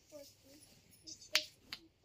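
A pause that is mostly quiet, broken by one sharp click a little past halfway and a few faint small sounds.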